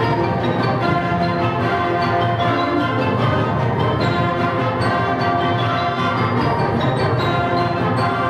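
A concert band of woodwinds, brass and percussion plays a lively Scottish-style reel at a steady full level, with many instruments sounding together.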